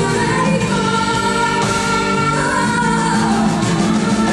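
Live flamenco music: grand piano with a string quartet, and women's voices singing long held notes.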